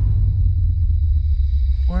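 Deep, steady low rumble of a dramatic sound-design drone, with a faint thin high tone held above it; a man's voice cuts in at the very end.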